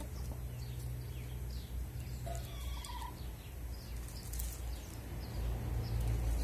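Domestic hens foraging on leaf-littered ground, with many short high chirps and a brief call about two and a half seconds in, over a low steady rumble.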